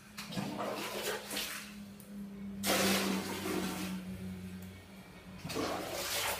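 Water rushing in a small tiled bathroom, coming in surges: a first one just after the start, the loudest about two and a half seconds in, and another near the end. A steady low hum runs underneath.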